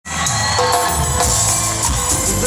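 A live cumbia band playing loudly, with bass, drum kit and hand percussion, cutting in abruptly at the start.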